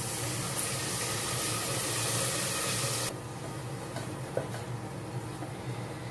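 White wine hitting a hot pot of frying onions and mushrooms, hissing and sizzling. The louder hiss cuts off sharply about three seconds in, and a quieter sizzle carries on as the pot is stirred.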